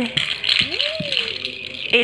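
Pink-and-green plastic ball rattle shaken steadily, its loose beads rattling continuously. A short voice sound that rises and falls in pitch comes about half a second in.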